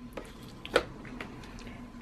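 A knife cutting set gelatin into squares in its dish, with a few light clicks and taps against the container, the loudest about three quarters of a second in.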